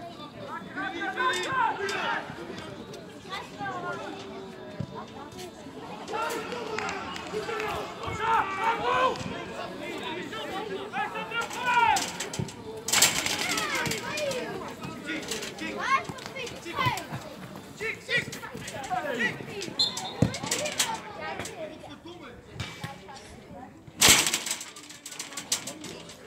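Voices calling and shouting on a football pitch, with players' and onlookers' calls throughout. Two short loud bursts of rushing noise cut across them, about halfway and near the end, the second the loudest.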